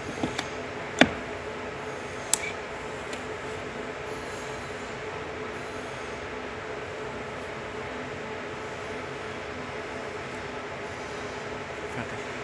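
Several sharp plastic clicks and knocks as an electric-car charging plug is pushed into a charging-point socket and seated. The loudest comes about a second in and another about two seconds later, over a steady hum.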